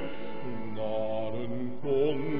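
A man singing a solo hymn, holding long sung notes, with a new phrase in vibrato starting near the end.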